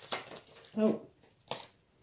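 Tarot cards being handled: the last quick strokes of a shuffle at the start, then one sharp tap about a second and a half in as a card is set down on the table.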